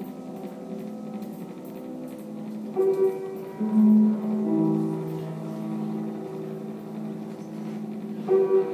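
Minimal ambient electronic music played live: sustained synthesized tones, with a higher note coming in about three seconds in and a louder low note about a second later.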